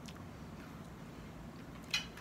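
Quiet room tone, with a faint click at the start and a short click just before the end.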